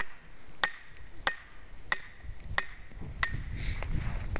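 A wooden stake being driven into the forest floor with blows from the back of an axe head: about seven even, sharp knocks on wood, roughly three every two seconds.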